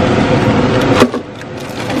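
Plastic bag of dried pancit canton noodles crinkling as it is handled, with one sharp crackle about a second in, after which it goes quieter.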